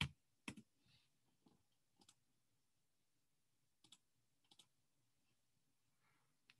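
Faint, scattered clicks of a computer keyboard and mouse: a sharper one right at the start, then a few short clicks and click pairs spread over the following seconds.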